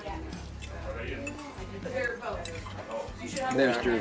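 Forks clinking and scraping on plates as people eat, a few light clinks scattered through, over soft background music.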